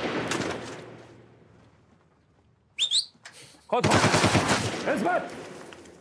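Gunfire in a tunnel: a loud burst just before the start dies away over about two seconds, then another sudden loud burst of shots comes about four seconds in and fades out, with a short high rising whistle between them.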